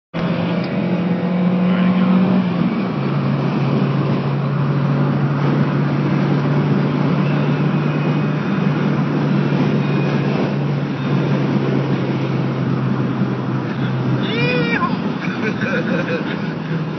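Car engine and tyre noise heard from inside the cabin while driving. The steady engine tone drops in pitch about three seconds in and then holds. A short rising-and-falling tone sounds near the end.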